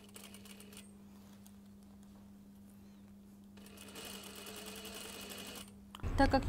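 Industrial lockstitch sewing machine, faint, with a steady low hum; about three and a half seconds in it stitches a seam at speed for roughly two seconds, then stops just before the end.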